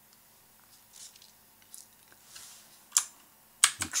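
Computer keyboard being typed on: a few soft taps, then a sharp key press about three seconds in and two more quick presses just before the end, the Ctrl+Z undo shortcut.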